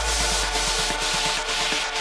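Electronic dance music build-up: the kick drum has dropped out, leaving a hissing noise sweep and a fast, even snare roll over held synth chords, with a low bass note fading away.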